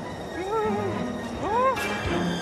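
Wordless cartoon character vocalising: two short cries, the first wavering, the second rising sharply in pitch, over background music. A sudden hit sounds near the end.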